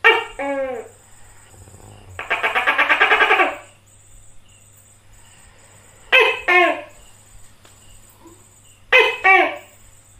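Tokay gecko calling its loud two-syllable "to-kek" three times: at the start, about 6 s in and about 9 s in. Between the first and second calls comes a rapid buzzy rattle lasting about a second and a half.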